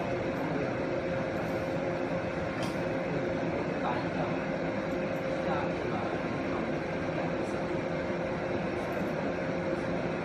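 Fiber laser marking machine running while it engraves a plastic ID card: a steady machine hum with a held mid-pitched tone and a few faint ticks.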